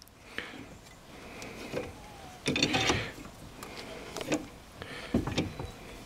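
Five-inch C-clamp screw being turned by its handle to press the old pad against the brake caliper piston, giving several short scrapes and clicks, loudest about two and a half seconds in. The piston is going back easily.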